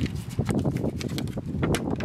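Thin, flexible plastic seedling pot crackling and clicking as it is squeezed and worked by hand to loosen a cucumber seedling's root ball, with a quick irregular run of knocks and crinkles.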